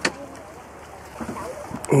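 A sharp click right at the start, then quiet outdoor background noise with wind on the microphone and faint voices a little past the middle.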